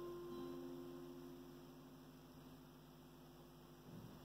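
Acoustic guitar's final strummed chord ringing out and slowly fading, with a faint steady electrical hum underneath.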